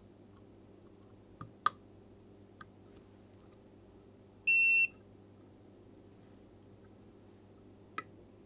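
Multimeter continuity beep: one short, steady, high-pitched tone about halfway through as the probe tips bridge two connected points on the circuit board, signalling continuity between them. A few faint clicks of the probe tips touching the board come before it.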